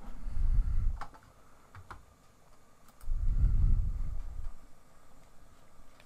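A few light computer mouse clicks, between two spells of low, muffled rumble: one in the first second and one from about three seconds in.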